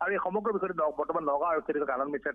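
Only speech: a man talking continuously in Assamese over a telephone line, with the narrow, thin sound of a phone call.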